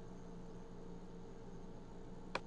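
Faint steady room tone: a low hiss with a light electrical hum, with no distinct events.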